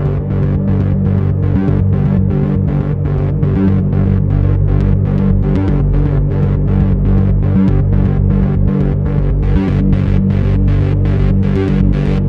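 Synthesizer jam on a Behringer Neutron analog synth with an UNO Synth: a loud, steady low drone under a pulsing note pattern of about four pulses a second.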